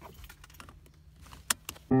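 Car seatbelt being drawn across and buckled: the webbing rustles and the metal latch plate clinks in small ticks, with a sharp click about one and a half seconds in. Music starts just before the end.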